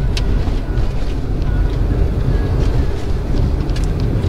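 A car driving along a snow-covered road: a steady low rumble of tyres and engine.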